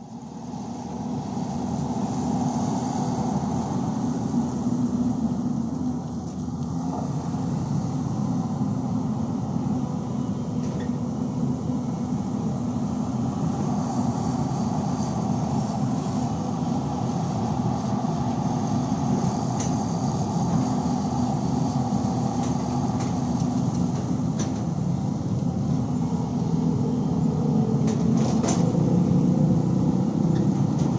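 Caterpillar hydraulic excavator's diesel engine running steadily as the machine digs and swings, with a few faint clicks and knocks from the working machine. It gets slightly louder near the end.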